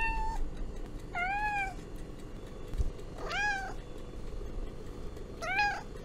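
A domestic cat meowing four times, each short meow rising and then falling in pitch, a second or two apart.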